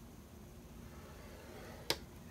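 A scoring tool drawn down a groove of a Martha Stewart Score Board through black cardstock: a faint scraping, then one sharp click near the end as the tip runs off the card onto the board.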